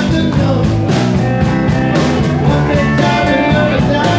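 Live rock-and-roll band playing loudly, with electric guitar and a man singing lead into a microphone over a steady beat.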